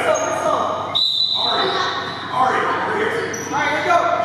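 Indoor youth basketball game: several voices of spectators and players calling out at once, echoing in the gym, with a basketball bouncing. About a second in, a thin high tone is held for just over a second.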